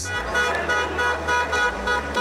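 A vehicle horn sounding in one long, steady blast, over outdoor background noise.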